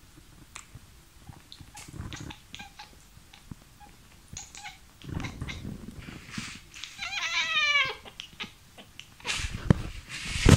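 Domestic cat giving one meow about a second long that falls in pitch, about seven seconds in. Scattered soft clicks and rustles come before it, with a few louder knocks near the end.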